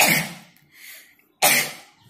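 A woman coughing twice, about a second and a half apart.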